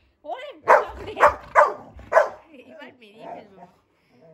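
A Labrador retriever barking, four loud woofs about half a second apart in the first two seconds, then softer vocal sounds.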